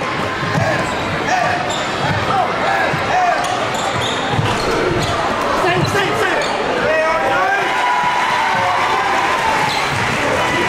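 A basketball being dribbled on a hardwood court, a run of short thumps about half a second apart, echoing in a large gymnasium among players' and spectators' voices.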